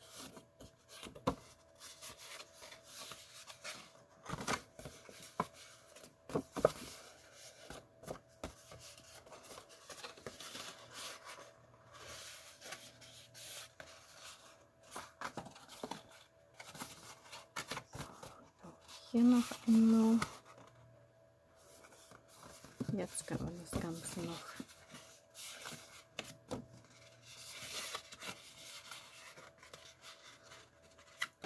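Cardstock being bent by hand and creased along its score lines, rustling and crinkling with many small clicks and taps. A short voice sound comes about two-thirds of the way through.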